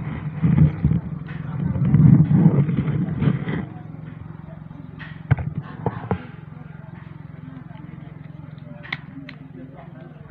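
Voices over a steady low hum during the first few seconds, then the hum alone with a few sharp clicks about halfway through and one more near the end.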